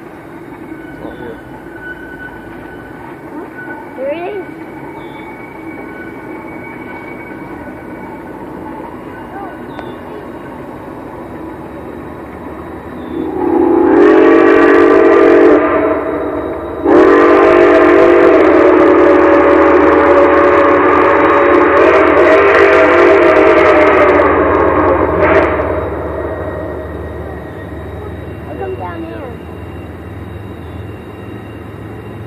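Steam whistle of Nickel Plate Road 765, a Lima-built 2-8-4 Berkshire steam locomotive, blowing a chord of several tones from across the valley: one blast of about two and a half seconds, then after a short break a long blast of about eight seconds that shifts slightly in pitch partway through before dying away. Under it runs a steady low rumble of the train working upgrade.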